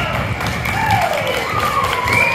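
Audience applauding and cheering, with long shouted cheers that slide down in pitch over the clapping.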